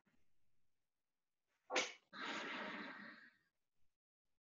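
A person's sudden sharp burst of breath through a call microphone about two seconds in, trailing into about a second of breathy rushing noise.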